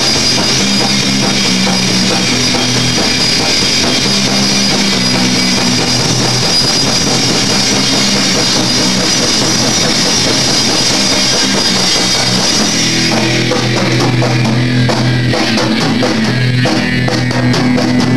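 Live punk rock band playing an instrumental passage: electric guitar and a full drum kit with a steady wash of cymbals. About thirteen seconds in the cymbals thin out and separate drum hits stand out.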